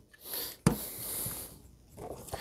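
Plastic toy figure being handled and stood on the table: one sharp click about two-thirds of a second in, with soft breathy hissing around it.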